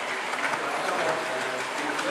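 Large-scale model diesel locomotive running along the layout's track toward the camera, a steady rumble of its wheels and motor on the rails.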